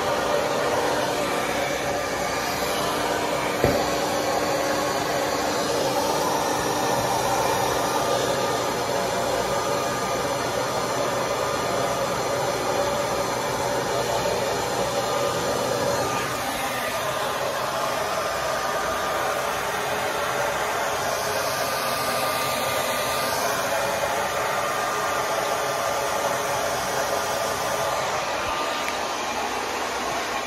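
Handheld hair dryer blowing steadily, drying a wet garment. A single click sounds a few seconds in, and the tone of the rush shifts slightly about halfway through.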